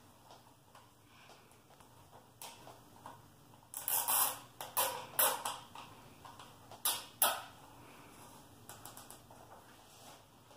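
Hands working inside a plastic milk crate, handling its bungee cord and PVC-pipe latch: scraping, rustling and clicking, with a burst of scrapes about four to five seconds in and two sharp clicks around seven seconds.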